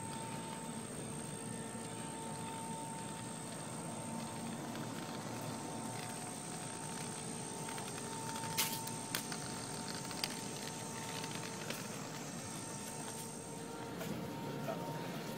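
Steady outdoor background hum with a thin high whine over it, and a few sharp clicks a little past the middle.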